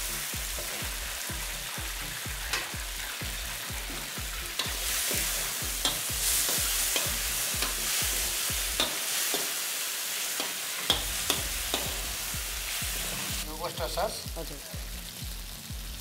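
Chicken sizzling in a hot red sauce in a wok over a gas flame, with a metal spatula scraping and knocking against the wok as it is stir-fried. The frying hiss is steady, and the spatula adds frequent sharp clicks.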